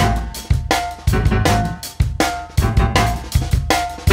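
Jazz drum kit playing a busy pattern of kick, snare and cymbal hits, several a second, with plucked double bass underneath.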